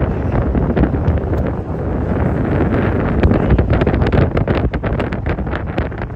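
Wind buffeting a phone's microphone: a loud, uneven low rumble with gusty crackles.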